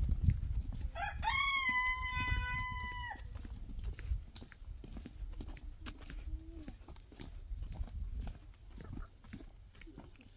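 A rooster crowing once, about a second in: one call of about two seconds that rises at the start and then holds level before breaking off. Low thumps and rumble sit underneath throughout.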